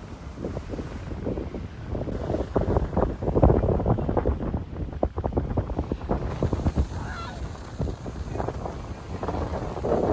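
Wind buffeting the microphone in irregular gusts over the rush of ocean surf breaking on the beach, loudest about three to four seconds in.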